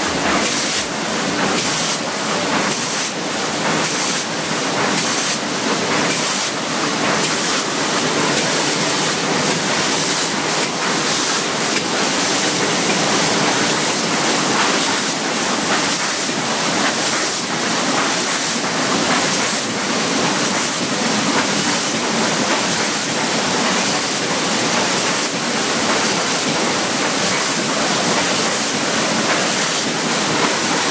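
Planeta sheetfed offset printing press, modified to print metal sheets, running: loud, steady machine noise with a faint regular clicking in the high end during the first half.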